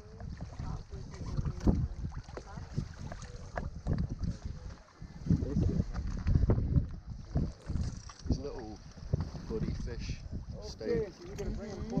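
Wind buffeting the action camera's microphone in irregular low rumbling gusts, loudest about halfway through, with low voices in the background.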